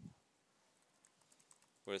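Faint computer keyboard typing: a run of light, quick keystrokes.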